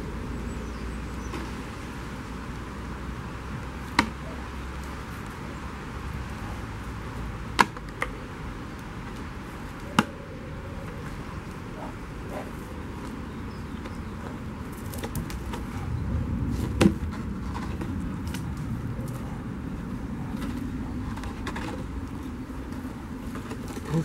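Brown bear handling a wooden log: a few sharp knocks, about 4, 7.5, 8 and 10 seconds in, over steady outdoor background noise, with a louder, noisier stretch about two-thirds of the way through.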